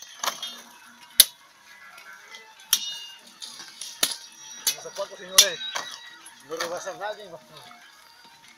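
Machete blows chopping through sugarcane stalks: sharp cracks at an irregular pace, about one a second, with faint voices between them.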